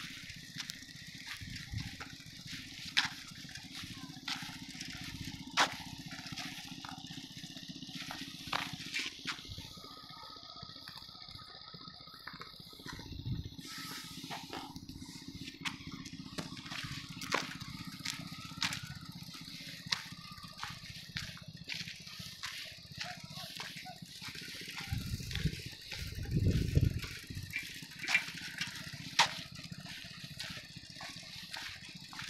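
Outdoor ambience of someone walking on dry ground and grass: irregular footstep crunches and crackles over a steady low hum, with wind buffeting the microphone in a low rumbling burst near the end.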